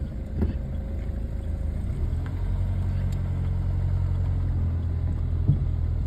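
A Dacia car's engine running steadily, heard from inside the cabin while the car is driven slowly, growing a little louder about two seconds in.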